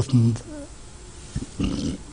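A man's spoken word trails off. About a second and a half in comes a faint low knock, then a short strained, breathy sound as his voice catches with emotion.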